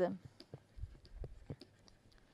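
Faint, scattered clicks and taps of a stylus writing on a tablet, with a soft low thump about a second in.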